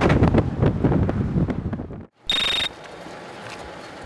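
Wind buffeting an outdoor microphone for about two seconds, then, after a brief cut, a short high-pitched electronic beep lasting under half a second, followed by a low steady hiss.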